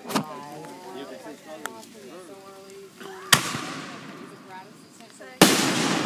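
Aerial firework shells bursting: a short pop at the start, a sharp bang about halfway through that trails off in a fading hiss, then a louder bang near the end that rings on as it slowly fades.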